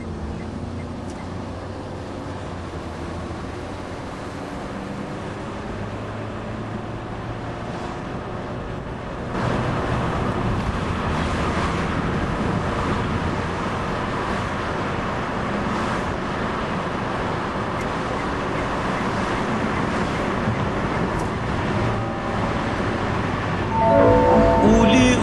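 Steady road and engine noise of a car driving along a city road, heard from the moving car. It grows louder and hissier about nine seconds in.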